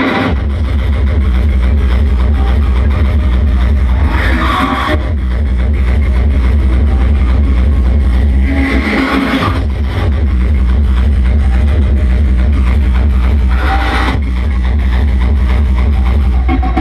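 Frenchcore hardcore music played loud over a large hall's sound system, with a heavy, continuous bass that drops out briefly about nine and a half seconds in.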